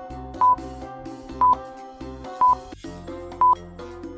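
Countdown timer sound effect: a short, steady high beep once a second, four times, over soft background music.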